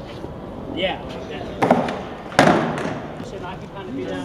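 Two sharp, hard knocks on concrete about three quarters of a second apart, the second louder and ringing briefly, with men's voices around them.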